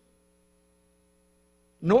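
Near silence during a pause in a man's speech, then his voice starts again near the end.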